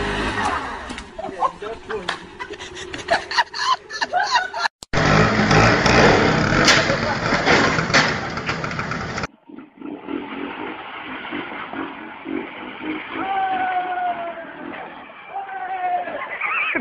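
People's voices mixed with vehicle noise, changing abruptly twice as separate recordings are cut together.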